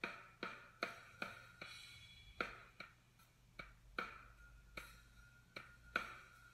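Programmed guide drum beat from Logic Pro's Drummer, voiced with Steven Slate Drums 4 samples, playing back faintly through a MacBook's built-in speakers. It is a steady beat of sharp hits, about two and a half a second, each with a ringing tail, while patterns are being auditioned.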